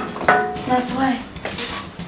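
Light clinks and knocks of hard objects as things are handled at a glass-topped table and a metal chair is sat in. A woman's voice asks "why?" about a second in.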